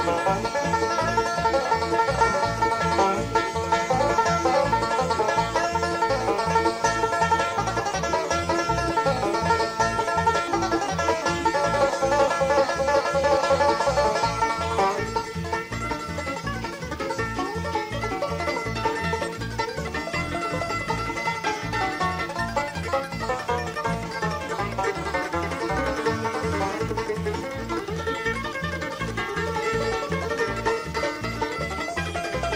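Bluegrass band playing a fast instrumental breakdown live, a five-string banjo leading over the band's steady driving rhythm. The sound thins slightly about halfway through.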